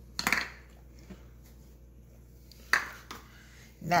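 Two brief knocks of kitchen utensils and bowls being handled, about two and a half seconds apart.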